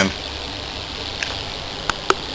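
High-voltage RF welder transformer energised and humming steadily with a faint hiss, broken by a few short sharp snaps of small arcs, one about a second in and two near the end. The transformer's secondary winding is burnt and shorting.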